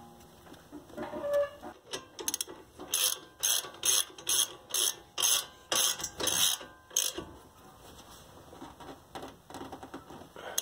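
Socket ratchet clicking in quick strokes, about two a second, as the brake caliper bolts are tightened. The clicking stops about seven seconds in.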